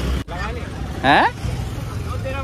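Low, steady rumble of idling scooter engines and street traffic, with a brief break about a quarter second in.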